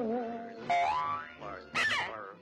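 Cartoon soundtrack music with comic sliding, boing-like sound effects: short pitched notes that glide upward, about three times, with a sharp accent near the end.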